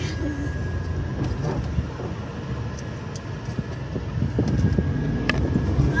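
Car engine and road noise heard from inside the cabin while driving slowly through a toll booth, a steady low rumble that grows louder in the last couple of seconds as the car pulls away, with a faint steady high tone and a few small clicks.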